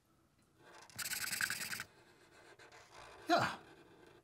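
Felt-tip marker drawing a circle on paper: a scratchy rub of the tip lasting just under a second. Near the end, a brief sound from a voice that falls in pitch.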